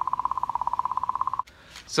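Sonified magnetic-field oscillations of comet 67P/Churyumov–Gerasimenko recorded by ESA's Rosetta spacecraft and sped up into the audible range: a fast-pulsing tone at a steady pitch, about fifteen pulses a second, that cuts off suddenly about one and a half seconds in.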